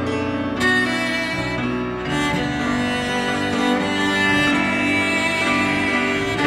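Cello played with the bow in long held notes that change pitch every second or so, with grand piano accompaniment.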